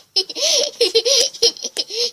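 A girl laughing, a run of short laughs.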